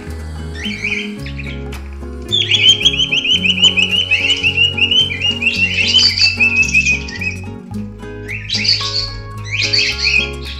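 A pet bird chirping in fast strings of short, high chirps: a brief run near the start, a long run from about two seconds in that drifts slightly down in pitch, and more near the end. Background music with steady low notes plays throughout.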